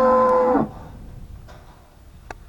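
A cow mooing: the end of a long, loud moo that cuts off about half a second in.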